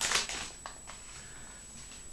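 Hands briefly rustling paper at the start, followed by two light clicks.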